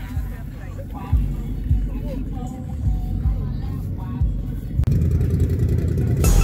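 Outdoor rumble with faint voices, then a sudden cut near the end to the louder, steady low rumble of ATV and side-by-side engines idling.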